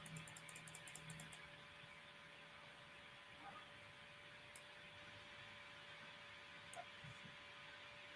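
Near silence: a faint steady electrical hum of room tone. A quick run of faint clicks comes in the first second and a half, and single faint ticks come twice later on.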